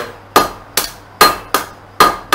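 Blacksmith's hand hammer striking a red-hot steel knife blank on an anvil: about five evenly spaced blows, roughly two and a half a second, each with a short metallic ring.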